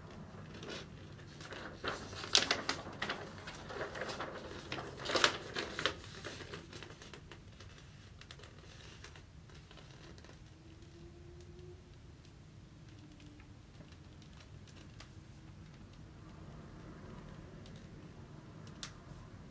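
A large folded paper poster insert being unfolded by hand, crinkling and rustling in a run of crackles over the first six seconds or so, loudest twice.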